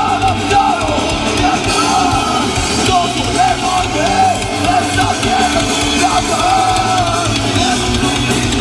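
Punk rock band playing live: distorted electric guitars, bass and drum kit, with a wavering, bending melody line riding on top.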